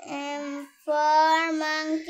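A child's voice singing two long held notes with a short break between them, the second a little higher.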